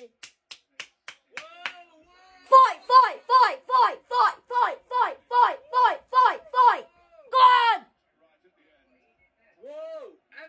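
A man clapping his hands a few times, then a quick run of about a dozen short, high-pitched vocal yelps, each falling in pitch, ending with one longer yelp.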